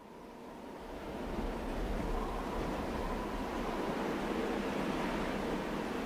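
A steady rushing noise fades in over about the first second and a half, then holds level.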